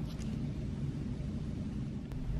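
Steady low rumble of city street traffic from the road below.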